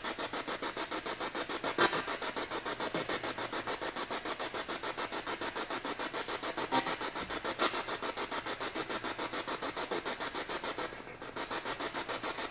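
Spirit box (ghost box) sweeping radio stations: hissing static chopped in a fast, even pulse, playing low through a speaker, with a few brief blips of sound breaking through.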